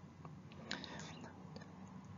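Quiet room tone with faint breath and mouth noises from a man, a few soft clicks about a second in.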